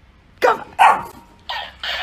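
Shiba Inu barking at a plush toy: four short barks in two quick pairs, the first pair the loudest.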